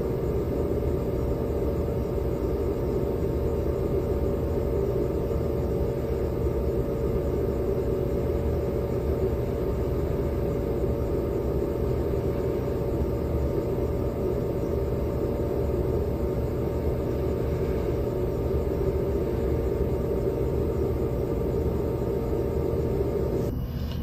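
Cooling fan of the unit loading a 40-cell 18650 scooter battery pack at about 23 amps, running steadily with a hum. The sound changes just before the end as the current falls.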